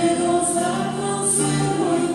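Church choir singing a communion hymn in long held notes.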